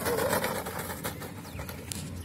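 EPP foam flying wing belly-landing and sliding across dry dirt and grass: a rough, crackly scraping that fades as it slides to a stop over about a second and a half.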